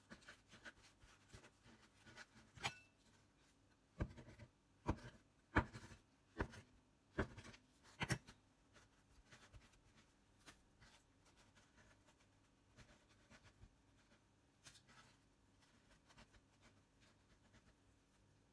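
Hands rolling and pressing bread dough on a plastic cutting board dusted with breadcrumbs: a run of about seven sharp taps against the board about four to eight seconds in, then faint rubbing and ticking.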